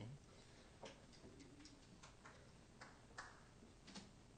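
Near silence: quiet room tone with a few faint, scattered clicks and knocks.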